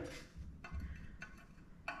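Two faint metallic clicks from steel pieces being handled and set in place on a steel welding table, one about half a second in and one near the end, over quiet background.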